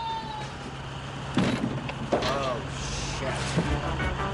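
Street traffic rumbling below a high-rise as a long cry trails off and falls away, then a heavy thud about a second and a half in, which is the falling man's body landing on a lorry's flatbed, and a short cry just after.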